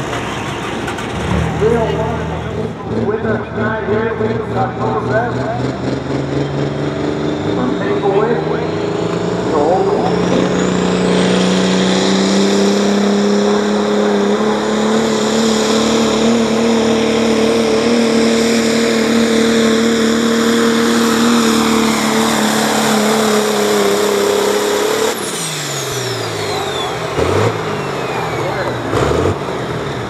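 Turbocharged diesel pickup truck engine at full throttle pulling a weight sled: it builds, then holds a steady high note under load with a high turbo whine climbing over it. Near the end it lets off, and the engine and turbo whine wind down.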